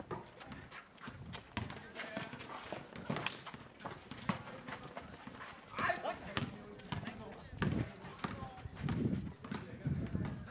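Pickup basketball on an outdoor paved court: running footsteps and sneaker scuffs on the paving, with a basketball bouncing, as a scatter of short knocks among players' voices.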